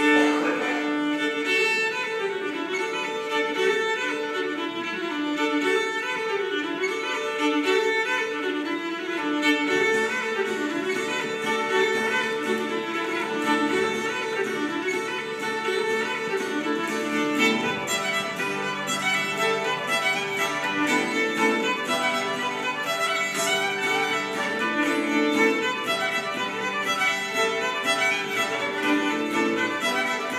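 Old-time fiddle tune played on a fiddle with a quick, even bowed melody, backed by a strummed acoustic guitar.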